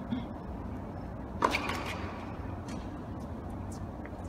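Tennis rally sounds in an indoor hall: a light racket hit on the serve just after the start, then one sharp, loud ball strike about a second and a half in with a brief falling squeak after it, and a few faint ticks later, over a steady low hum of the hall.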